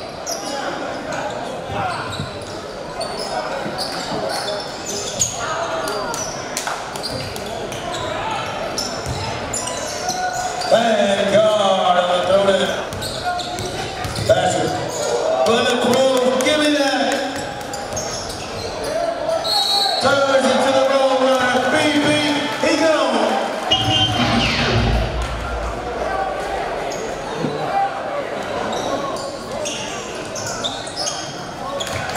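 Basketball bouncing on a hardwood gym court amid steady crowd voices echoing in a large hall. A deep rumble with a falling sweep comes about two-thirds of the way through.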